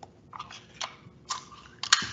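Plastic wrap crinkling as a wrap-covered cardboard crisp can is handled, giving about four short crackles and light taps, the last ones the loudest.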